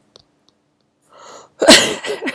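A woman sneezes once, loudly, near the end, with a short breath in just before it.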